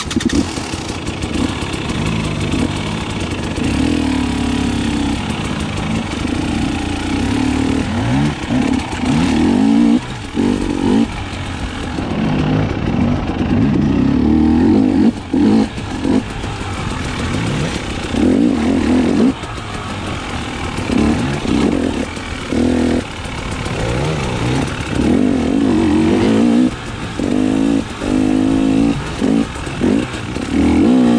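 2019 KTM 300 XC-W TPI's fuel-injected two-stroke single-cylinder engine being ridden on a dirt trail, its pitch rising and falling over and over as the throttle is worked, with several short drops where the throttle is closed.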